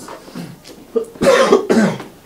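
A person coughing loudly once, a little over a second in, in a short burst of under a second.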